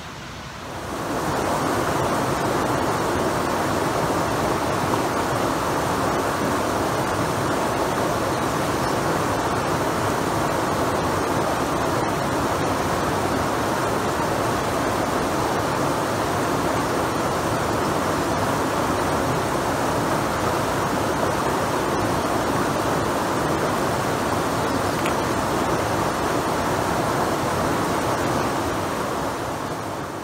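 Shallow mountain stream rushing over rocks and a small cascade, a steady unbroken water noise. It fades in over the first second or two and fades out near the end.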